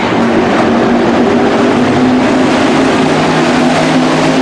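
IMCA hobby stock race cars' V8 engines running hard at racing speed on a dirt oval: a loud, steady blend of several engine notes at once.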